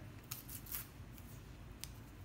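Alcohol prep pad packet being torn open by hand: a few faint crinkles and tearing of the wrapper.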